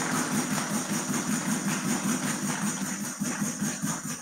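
Congregation applauding, a dense even clapping over a steady wavering low tone, fading out right at the end.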